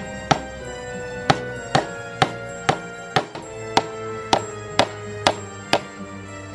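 A hammer tapping steel nail-in staples into a wooden board to hold down an antenna's wire coil: about ten sharp strikes, roughly two a second. Background music plays underneath.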